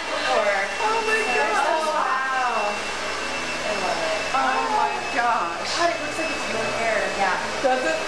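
Several women's voices exclaiming and laughing over one another, over a steady rushing background noise.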